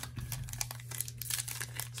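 Trading-card pack wrapper crinkling as it is handled and torn open at the corner, a rapid run of small crackles.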